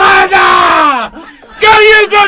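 A man yelling in triumph, one long loud yell whose pitch falls away at the end, then a second shout starting near the end.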